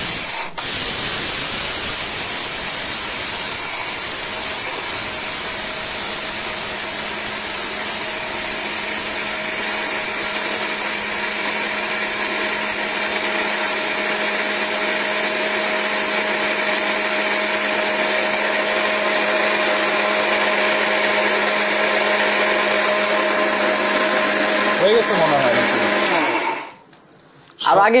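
ORPAT mixer grinder's motor running steadily with a high whine as its steel jar grinds a dry ingredient to a fine powder. About 26 seconds in it is switched off and winds down, its pitch falling.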